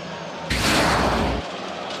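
A loud burst of noise about a second long that cuts in and out abruptly, over faint steady background noise.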